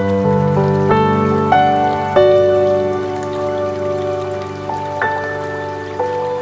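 Slow, calm piano notes, struck one or a few at a time and left to ring out, over a faint steady patter of rain.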